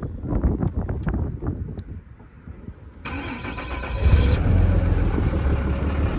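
Dodge Ram's Cummins turbo-diesel being started: a few seconds of cranking, then the engine catches about three seconds in and settles into a loud, steady run, starting easily.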